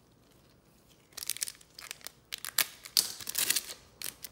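The wrapper of a trading-card pack crinkling and tearing open. There is a run of sharp, irregular crackles starting about a second in.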